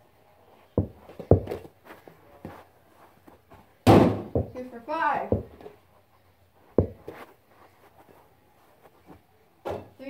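A small basketball knocks against a plastic toy hoop's backboard and rim and drops onto a carpeted floor: a series of hollow thuds, the loudest about four seconds in with a short ringing tail.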